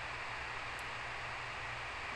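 Steady room tone through the microphone: an even hiss over a faint low hum, with one brief faint high tick a little under a second in.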